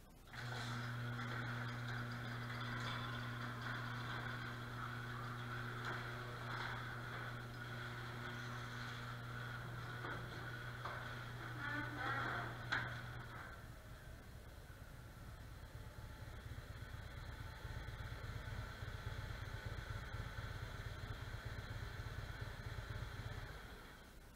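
Electric garage door opener running as the sectional door rolls up: a steady motor hum with rattling from the door, ending in a clunk about halfway through. Then a motorcycle engine idles with a pulsing rumble as the bike rolls up the driveway, and it shuts off just before the end.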